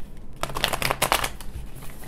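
A deck of tarot cards being riffle-shuffled by hand: a quick run of card flicks starting about half a second in and lasting around a second.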